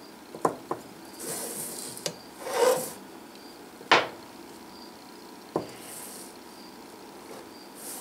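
Short scraping rubs and a few light knocks and clicks as a digital height gauge is slid and set on the bench and its scriber scratches center lines on a dye-coated metal block; the sharpest knock comes about four seconds in.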